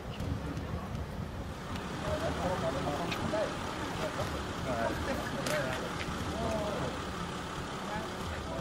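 Steady low rumble of a running vehicle engine, with faint voices talking from about two seconds in.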